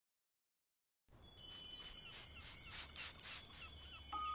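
Silence, then about a second in a faint, high tinkling of many chime-like tones starts, with small falling slides, opening the trailer's soundtrack music.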